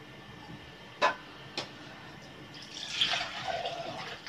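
Warm milk poured from a pot into a plastic food-chopper bowl: two short knocks, then the pour runs for the last second and a half.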